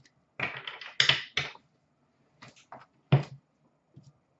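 Hands handling trading cards and tapping them down on a glass counter: a quick flurry of clicks and rustles in the first second and a half, then a few separate taps, the loudest just after three seconds in.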